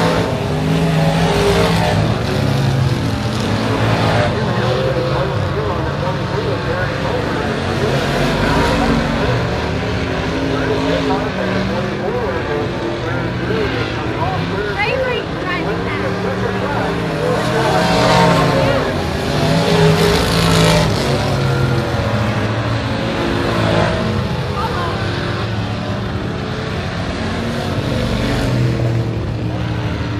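Pure stock dirt-track race cars running at racing speed around the oval, their engines revving up and backing off through the turns. The sound swells several times as cars pass close by.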